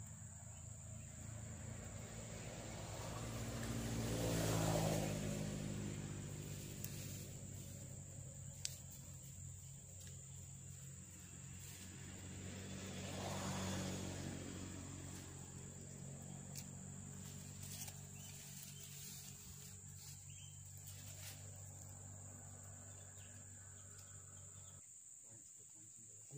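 Two motor vehicles passing, each engine swelling and then fading: the first loudest about five seconds in, the second about fourteen seconds in. A steady high-pitched insect drone runs underneath.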